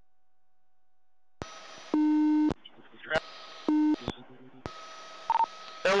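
Police two-way radio channel: a faint steady tone, then radio hiss with a loud low buzzing tone sounding twice, about half a second each and a second and a half apart, and a short higher beep near the end.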